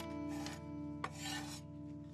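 Kitchen knife scraping twice across a wooden cutting board, each stroke a short rasp, with a light click between them. Soft sustained guitar music plays underneath.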